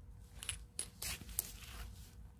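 Small plastic plant labels clicking and rustling as they are picked through and handled, a few short sharp clicks and a brief rustle.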